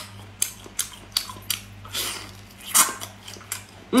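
A person chewing and biting cooked mini octopus: a string of short wet mouth clicks and smacks, with a couple of louder bursts in the middle, over a faint steady low hum.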